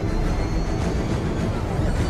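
Dramatic film-soundtrack music with vehicle noise mixed in: a dense, steady wash with faint sliding pitches like passing traffic.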